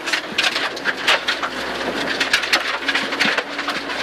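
Rally car at speed on a gravel road, heard inside the cabin: the engine runs under the dense, irregular rattle and pattering of gravel and stones thrown against the underbody and wheel arches.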